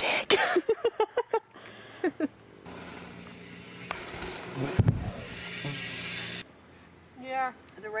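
A woman laughing in quick bursts, then a mountain bike riding down a dirt trail: a steady rush of tyre and wind noise with a heavy thump a little before five seconds in.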